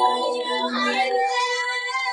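Female singing voice on its own, with no backing instruments: an a cappella vocal stem extracted from a pop song with an online vocal-separation tool. The voice sings continuously, with some notes held.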